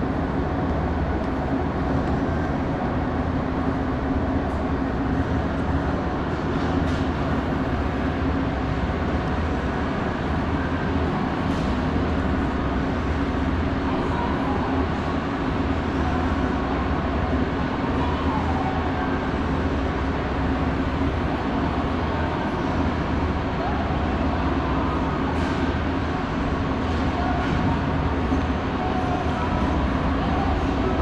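Mitsubishi pallet-type inclined moving walkway (autoslope) running at its slow steady speed: an unbroken mechanical hum with a constant low drone from its drive and pallets.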